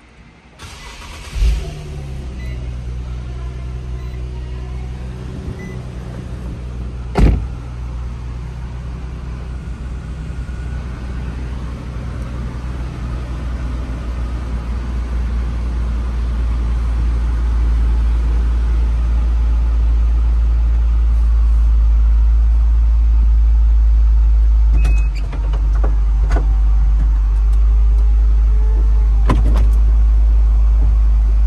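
Infiniti G37's 3.7-litre V6 cranking briefly and catching about a second and a half in, then idling, heard from inside the cabin, with a steady low rumble that grows louder over the next fifteen seconds or so. A sharp knock comes about seven seconds in, and a few clicks near the end.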